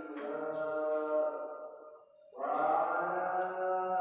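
Background music of sustained, held chords that fade out briefly a little past halfway, then swell back in.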